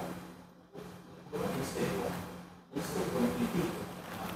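A man smoking a cigar: soft puffs and breathy exhales of smoke in two stretches after about a second of quiet, over a steady low hum.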